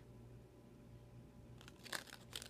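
Near silence with a low steady hum; near the end, a few faint clicks and rustles as a cardboard earring card is handled and turned over.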